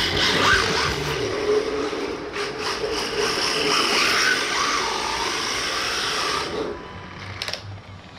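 Electric motor of an RC Dodge Charger drift car whining, its pitch wavering up and down with the throttle, over a steady hiss of tyres sliding on concrete. It dies away about a second before the end.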